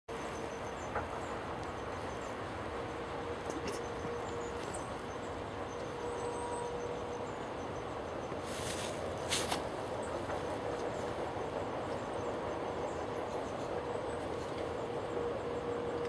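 Steady outdoor background rumble and hiss with a faint steady hum. Two short hissy bursts come about nine seconds in; no bird call stands out.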